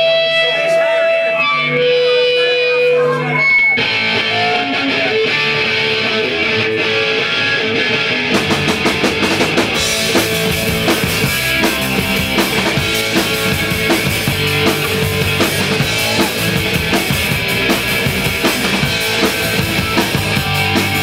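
Live punk rock band starting a song: a few held, ringing electric guitar notes, then a distorted guitar riff from about four seconds in, with drums and bass joining about eight seconds in and the full band playing on.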